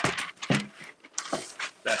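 A sheet of butcher paper rustling and crackling in several short bursts as it is pulled off its roll and handled.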